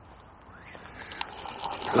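A float rod struck upward, pulling the line and float up out of the river: a swishing splash of water that builds through the second half, with a few light clicks. The strike answers the float dragging under, a false bite from the rig catching the bottom where the river is shallower than it was set for.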